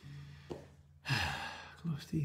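A low held note at the end of a song fades and stops about a second in. It is followed by a man's loud, breathy sigh and then a brief vocal sound near the end.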